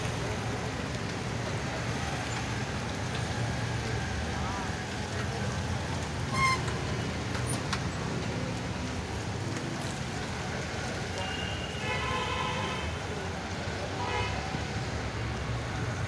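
Steady city street traffic noise heard from a moving bicycle, with a short toot about six and a half seconds in and faint distant voices.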